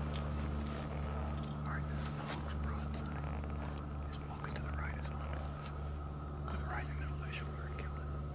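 Hushed whispering, with a few faint clicks, over a steady low hum.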